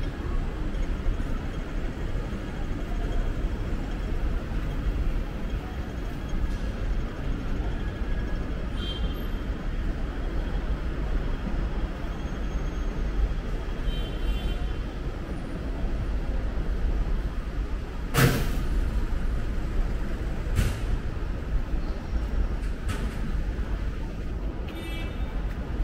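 City street traffic at night: a steady low rumble of engines and tyres. A sharp, loud burst of noise cuts through about three quarters of the way in, with a shorter one about two seconds later.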